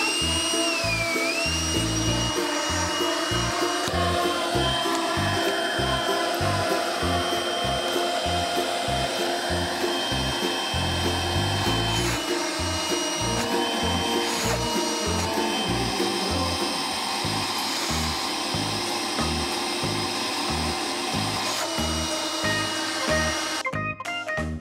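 Makita cordless stick vacuum's brushed (carbon-brush) motor running continuously with a steady whine and rush of air. The whine shifts in pitch several times while the nozzle's suction holds up a weight hanging from a spring scale. Background music plays underneath.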